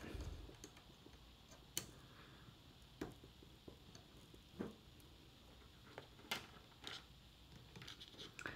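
Faint, scattered clicks and taps of micro USB power plugs being pushed into Raspberry Pi power sockets and cables being handled, about half a dozen over several seconds.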